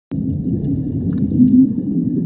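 Scuba divers' exhaled air bubbles streaming up from their regulators, heard underwater as a dense, muffled bubbling rumble.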